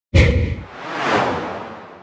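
Animated logo intro sound effects: a sudden deep bang just after the start, then a whoosh that swells to about a second in and fades away.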